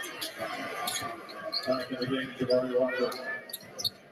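Live NBA game sound picked up by the broadcast: a basketball being dribbled on a hardwood court, with short knocks, over background voices of the arena crowd and players.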